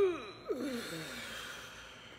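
A person breathing out audibly in a long, slow exhale, with a voiced sigh falling in pitch: the out-breath of a guided breathing exercise.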